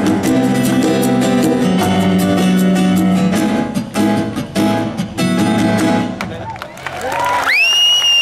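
Acoustic band playing the closing bars of a song: acoustic guitar strumming over sustained keyboard chords, fading into the final notes about 6 to 7 seconds in. The audience then cheers, with a loud rising whistle held near the end and applause starting.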